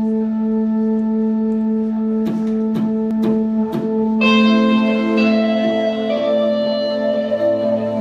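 Live band playing a slow, droning intro: a steady held note with a pulsing overtone, a few sharp hits between two and four seconds in, then a brighter sustained chord joins about four seconds in.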